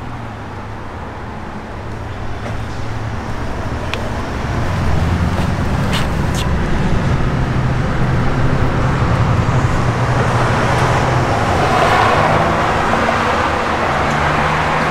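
A motor vehicle engine running steadily, with road traffic noise. The low hum grows louder about four to five seconds in, and a rushing tyre-like hiss swells toward the end.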